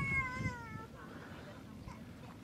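A single high-pitched call, wavering and falling slightly in pitch, lasting under a second, then faint outdoor background.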